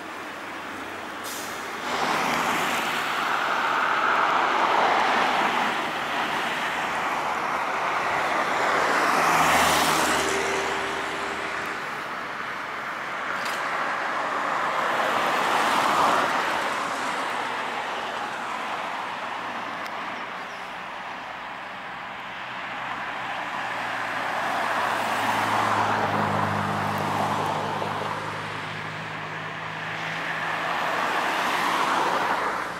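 Street traffic: cars and electric trolleybuses passing one after another, the tyre and road noise swelling and fading with each pass. A low hum joins in near the end.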